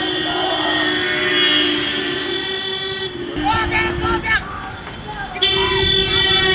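Vehicle horns blaring in long, steady blasts, broken off for about a second near the end. Shouting voices come through over them.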